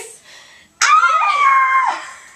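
A girl's shrill, high-pitched scream, held for about a second and sliding slightly down in pitch, in mock fright.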